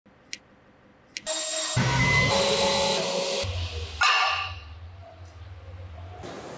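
Two sharp clicks, then a loud mechanical whirr with steady tones, a sudden hit about four seconds in that fades away, and a low hum: machine and switch sounds cut together for an intro.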